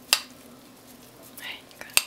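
Metal spoon clinking twice against a ceramic bowl, just after the start and again at the end, as it scoops through chunks of frozen cola, with a short soft swish in between.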